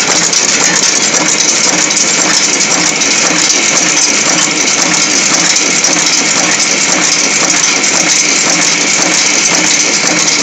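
Four-die, four-blow cold heading machine running: a loud, steady, rapid metallic clatter of its die strokes and transfer mechanism.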